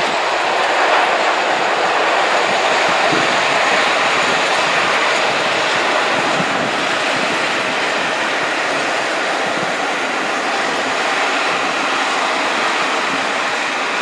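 Passenger coaches of a steam-hauled train rolling past, a steady rush of wheels on rail.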